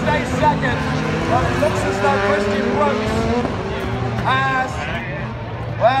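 Voices from the crowd and public-address speaker over the engines of rallycross race cars running on the circuit, one engine note rising steadily for a second or two midway.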